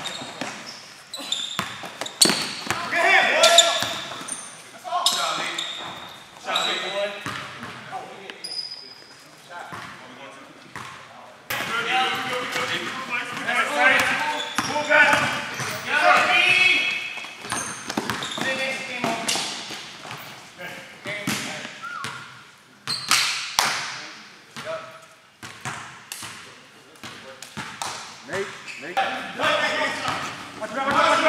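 A basketball dribbled and bouncing on a hard indoor court, with irregular sharp knocks, amid players' voices calling out.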